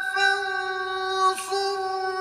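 A man's voice reciting the Quran in a high, long-held note, melodic chanting with a steady pitch, held softly. A little over a second in, the note briefly dips in pitch and breaks with a breathy sound before it carries on.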